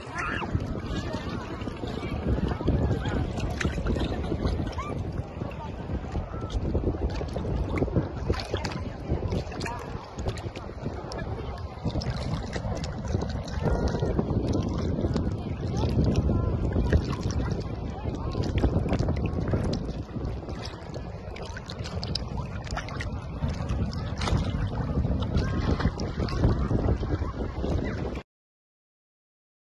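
Wind buffeting the microphone over sea water lapping and splashing around a small inflatable float, an irregular rumbling noise that cuts off suddenly at the end.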